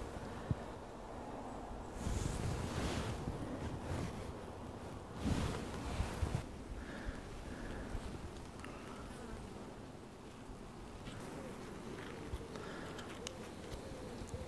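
A honey bee colony buzzing steadily from an opened hive whose frames are being lifted out, the bees disturbed by an inspection late on a cold, poor-weather evening. Two brief louder swells of noise come about two and five seconds in.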